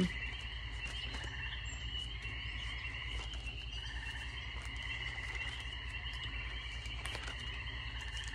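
A steady, high, pulsing chorus of calling animals, running unbroken over a low steady hum.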